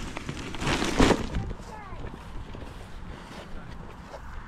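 A woven plastic shopping bag being handled as shoe boxes are packed into it: one loud rustle about a second in, then quieter, with faint voices in the background.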